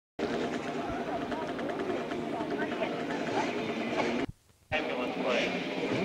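Several people talking at once, unintelligible, over a steady low hum. The sound cuts out suddenly for about half a second a little past four seconds, then the chatter resumes.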